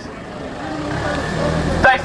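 A motor vehicle's engine rumbling in the street, growing steadily louder and then cutting off abruptly near the end.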